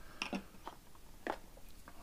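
Several small, sharp clicks and taps as titanium-handled folding knives are set down and nudged into place on a wooden tabletop.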